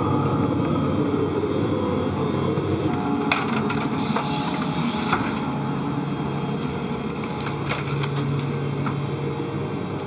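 Steady machine noise of the International Space Station cabin's fans and equipment, with a few faint knocks as the astronaut and camera move through the modules. A low hum comes in about halfway through.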